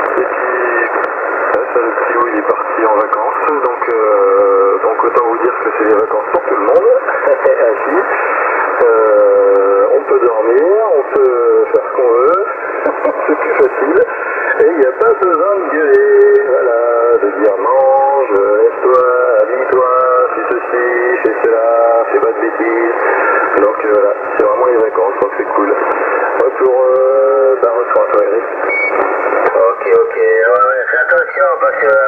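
Single-sideband (USB) voice of a distant CB station received on a Yaesu FT-450 transceiver at 27.275 MHz and heard through its speaker. The speech is continuous, narrow-band and tinny, over steady background hiss.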